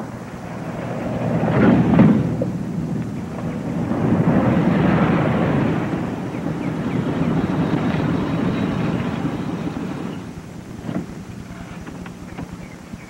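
A car engine running as the car drives up, its rumble swelling and easing a few times, then dying down near the end, with a short knock just before it ends.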